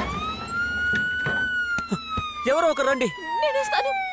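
Ambulance siren wailing: one slow rise in pitch during the first second and a half, then a long slow fall. About halfway through, a person's voice cries out over it.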